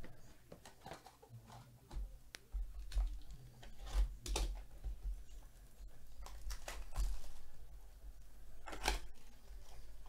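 A cardboard trading-card hobby box is handled and opened by gloved hands. There are scattered scrapes, taps and a tearing of cardboard and wrapping, the sharpest about four seconds in and again near the end.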